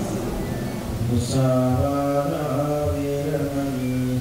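Buddhist devotional chanting starts about a second in: a single low voice holding long, steady notes.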